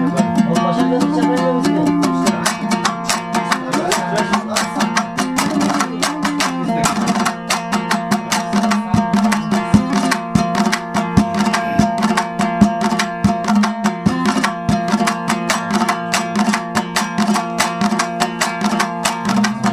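Instrumental opening of a Hazaragi folk song: a plucked string instrument played in fast, even strokes over a steady low drone.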